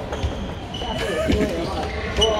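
A badminton rally in a large sports hall: sharp racket hits on the shuttlecock and brief squeaks of sneakers on the wooden court, with players talking in the background.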